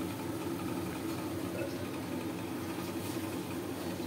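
A steady low mechanical hum, with a faint sizzle from onion masala frying in oil in a kadai.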